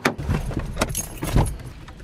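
Car keys jangling, with a few sharp clicks and low thumps as a person opens the car door and climbs into the seat.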